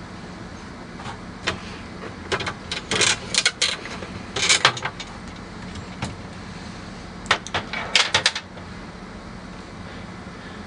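Plastic damper being unfastened and lifted out of an ice machine's food zone: a series of short plastic clicks and knocks in small clusters, the busiest about 3 s, 4.5 s and 8 s in, over a steady low hum.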